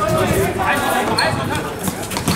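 Football being dribbled and kicked on a hard outdoor court, a few sharp knocks of the ball, with players' voices calling out over it.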